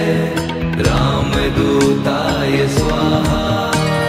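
Hindu devotional bhajan music dedicated to Hanuman: held tones over a steady percussion beat.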